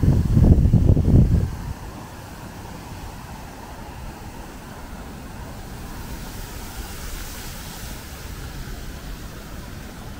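Wind buffeting the microphone, a loud low rumble for the first second and a half, then a steady rush of wind through tall reeds.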